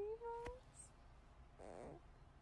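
A baby's soft cooing: a wavering note that rises and stops about half a second in, then a short breathy sound near the end.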